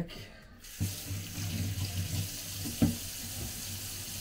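Kitchen mixer tap turned on about half a second in, water running steadily into a stainless steel sink. A single sharp knock near the three-second mark.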